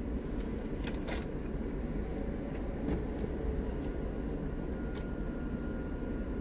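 Steady low hum inside a parked car's cabin, with a few sharp crunches about a second in as a taco is bitten into and chewed.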